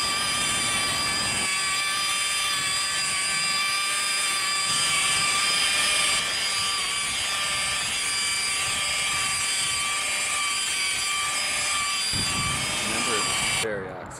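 Corded rotary polisher running steadily with a high whine as its pad buffs the oxidized paint of a truck fender. It cuts off shortly before the end.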